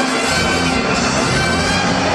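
A live band playing music in a large arena, heard from high up in the stands.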